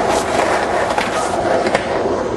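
Skateboard wheels rolling down rough concrete with a steady rolling noise and scattered clacks, and one sharp knock near the end.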